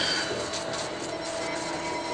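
Steady rushing, hiss-like sound effect from a TV episode's soundtrack, with faint ringing tones in it, starting abruptly, as a hand is held over a candle to work a spell.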